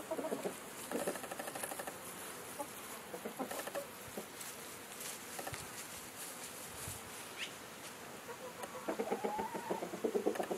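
Chickens clucking in short, scattered calls, with a brief high rising chirp about seven seconds in and busier calling near the end.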